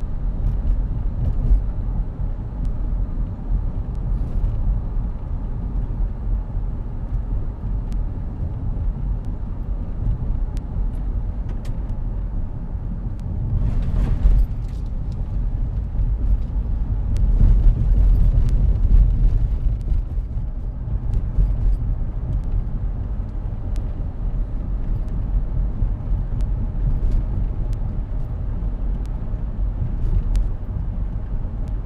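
Cabin noise of a car driving at road speed: a steady low rumble from the engine and from tyres on cracked pavement, with scattered light ticks. The rumble swells louder about halfway through and again shortly after.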